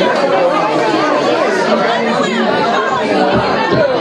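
Chatter of several people talking and laughing at once in a crowded room.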